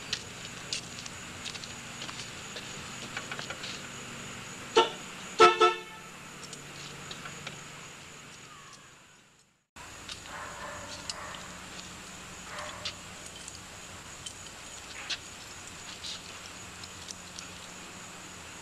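A car horn sounds three short honks about five seconds in, the last two in quick succession: a customer honking for the mechanic to come out. The background fades to silence a little past halfway and then cuts back in.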